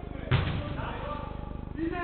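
A single sharp thud of a football being struck on an indoor court about a third of a second in, the loudest sound here, with players' voices calling around it.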